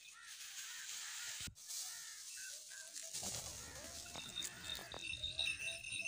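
Short, repeated bird calls, crow-like caws, in open scrub. A low rumbling noise joins from about three seconds in, and the sound drops out for a moment about one and a half seconds in.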